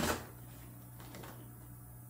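Quiet room tone with a low steady hum; a short sound fades out in the first moment.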